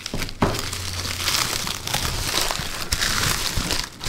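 A plastic padded shipping mailer crinkling and rustling steadily as it is handled and opened by hand.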